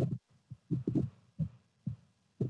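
A few short, muffled bursts of a person's voice over an open video-call microphone, the words indistinct.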